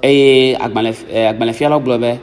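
Speech only: a man talking into a microphone.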